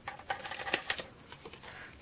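A few faint clicks and light rustling of cardstock being peeled up from a plastic scoring plate, held by repositionable adhesive.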